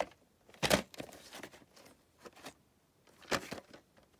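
Handling noise from a VHS tape in a cardboard slipcover being turned over in the hand: brief rustles and taps, with two louder knocks, one just under a second in and one near the end.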